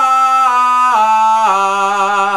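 A man singing an open 'ah' vowel down a five-tone scale, with his mouth held wide open in one fixed position. Each note is sustained and the pitch steps down twice, about a second in and again near the end, giving three descending notes.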